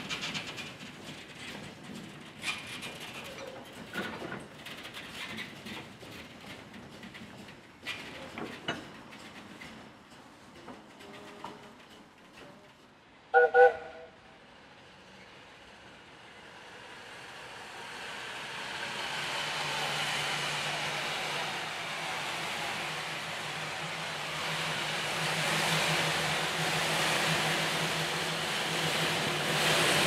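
Small steam shunting locomotive at work: a few scattered clanks early on, one short whistle toot about halfway through, then the engine running closer, growing steadily louder with a steady low hum.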